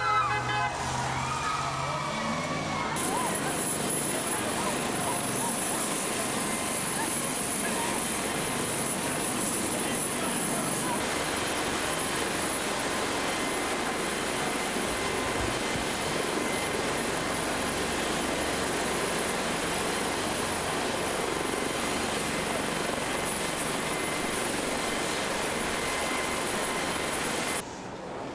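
A helicopter running steadily: a dense rushing noise with a thin high whine over it, which stops suddenly near the end.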